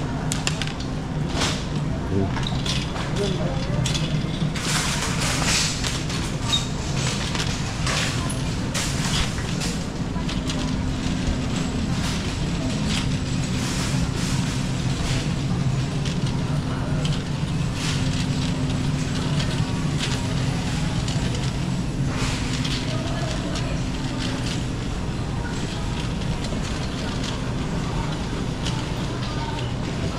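Busy supermarket ambience: a steady low hum under indistinct voices of shoppers, with scattered short knocks and rattles, most of them in the first ten seconds.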